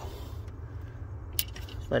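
A single short, sharp metallic click about two-thirds of the way through, as a gloved hand handles the parking-brake cable fittings under the truck, over a steady low hum.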